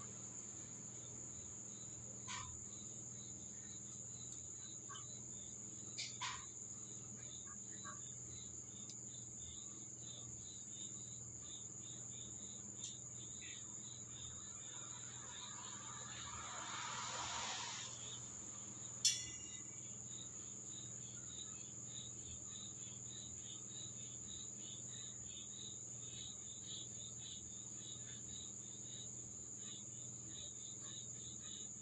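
Crickets trilling steadily at a high pitch over a low steady hum. A brushing rustle about 16 seconds in is followed by a single sharp click about 19 seconds in, the loudest sound.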